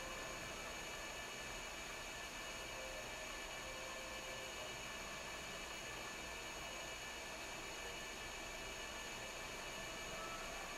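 Steady faint hiss with a light hum: room tone, with no distinct sound standing out.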